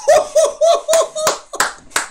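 A man clapping his hands in a quick run of about seven claps, roughly three a second.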